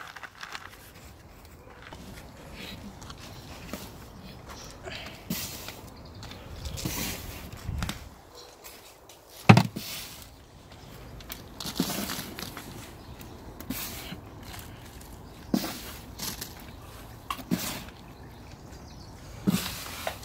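Loose soil and compost mix being sifted and worked by hand in a plastic tub: intermittent rustling, scraping and pattering of soil, with one sharp knock about halfway through.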